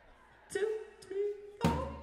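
A voice over the PA calling out three short words about half a second apart, a count-in for the band; the third call is the loudest.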